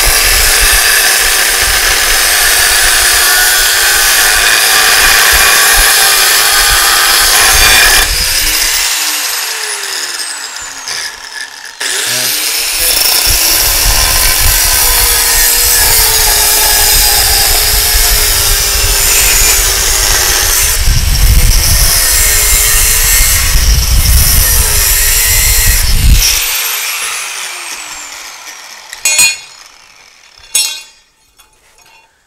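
Corded angle grinder with a cut-off wheel cutting through a steel hinge piece, its motor pitch wavering as the wheel bites. It is switched off about eight seconds in and winds down, starts again about four seconds later and cuts until near the end, when it winds down again. Light metal clinks follow right at the end.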